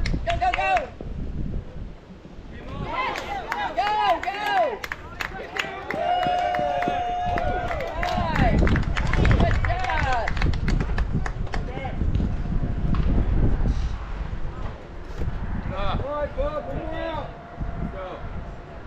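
Voices at a youth baseball game shouting and calling out in bursts, including one long held call about six seconds in, over a steady low rumble.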